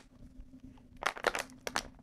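Thin plastic water bottle crinkling as it is handled, with a cluster of sharp crackles about a second in.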